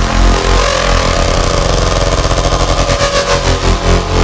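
Raw hardstyle electronic track: a distorted synth lead over heavy bass, with a roll that speeds up through the second half, building toward a drop.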